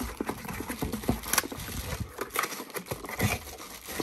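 Cardboard packaging being handled and rummaged through by hand: irregular rustling, scraping and light knocks as a boxed candle is lifted out of a shipping box.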